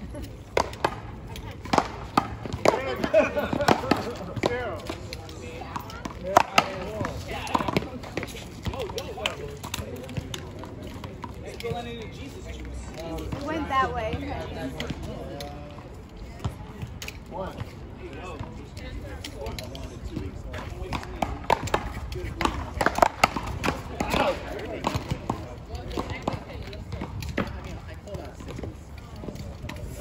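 One-wall paddleball rally: solid paddles crack against a rubber ball and the ball hits the concrete wall, in irregular runs of sharp hits, with players' voices between them.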